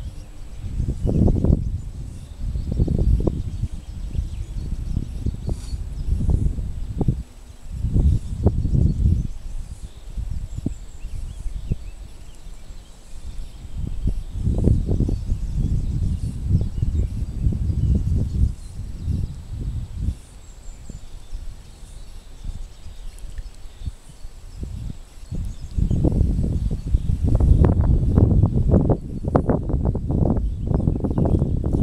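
Wind buffeting the microphone in gusts: a low rumble that swells and drops away every few seconds, strongest near the end.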